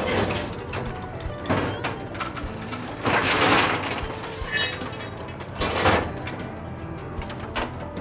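Steel oyster dredge being emptied onto a boat's deck: oysters and shell clatter and crash out, loudest about three seconds in, among metallic clanks of the dredge frame, over a steady low hum.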